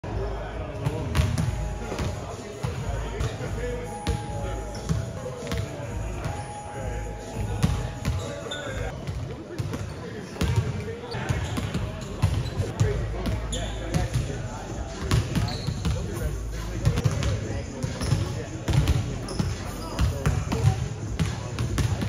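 Several basketballs bouncing on a hardwood gym floor, an irregular run of dribbles and bounces.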